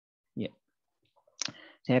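Two short clicks on an otherwise silent track, one about half a second in and a sharper one about a second and a half in. A man starts speaking just before the end.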